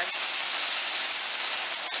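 Filet mignon steaks sizzling steadily on a hot All-Clad stovetop grill pan over medium heat.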